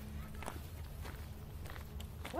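Footsteps of people walking, a few soft steps about half a second apart, over a low rumble.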